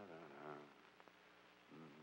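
Near silence, with a faint voice heard briefly at the start and again near the end.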